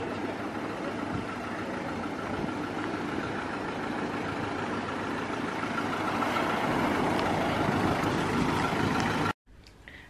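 A motor vehicle engine running steadily with a faint whine, slowly growing louder, then cutting off suddenly near the end.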